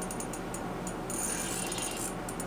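Ice fishing reel being worked while a hooked burbot is played up through the hole, its mechanism ticking in a quick, irregular run of small clicks, with a steadier high hiss joining about halfway through.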